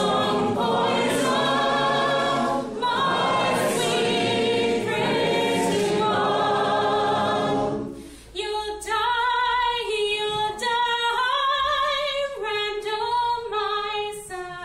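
Unaccompanied folk song: many voices sing a chorus together, then from about eight seconds in a single woman's voice carries on alone.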